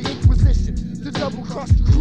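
Hip hop track: a rapper's voice over a beat with a deep kick drum.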